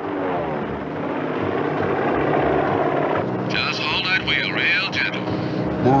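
Propeller aircraft engine droning steadily and swelling to a peak about halfway through. A brief high-pitched voice-like sound rides over it in the second half.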